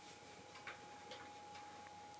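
Near-silent room tone: a faint steady hum with a few soft, irregularly spaced clicks.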